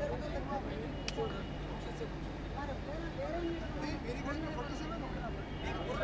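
Background chatter of several distant voices, indistinct and overlapping, over a steady low hum.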